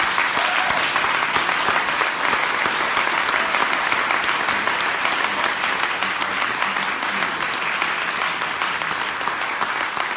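A room of people applauding, many hands clapping in a loud, continuous patter that eases slightly toward the end.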